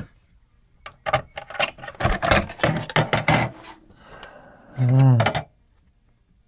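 Clatter and sharp clicks from the aluminium cover of a Wandel & Goltermann radio-link receiver module being worked loose and lifted off, a quick run of metallic clicks lasting about two and a half seconds. Near the end a man gives a short hummed exclamation.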